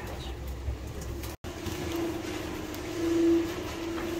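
Steady machine hum from the cable car station's machinery, with a low rumble. The hum swells a little near the end, and the sound cuts out completely for a moment about a second and a half in.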